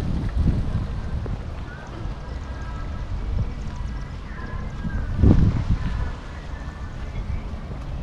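Wind buffeting an outdoor camera microphone: a low, uneven rumble with a stronger gust about five seconds in.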